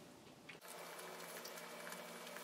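Faint chewing of a slightly overbaked baked Japanese sweet potato fry, over a low steady hum of room tone.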